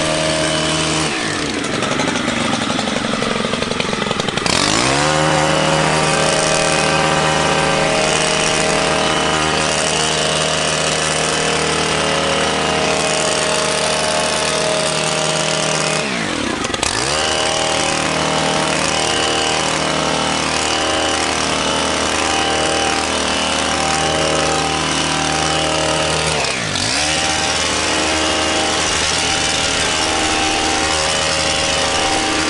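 Small gas engine of a pole hedge trimmer running at high throttle. The throttle is let off three times, first for a few seconds shortly after the start, then briefly about sixteen seconds in and again near the end. Each time the pitch drops and then climbs back as it revs up again.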